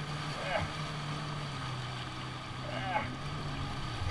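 Jet ski engine running steadily at low throttle, a constant low hum with the wash of water around the hull.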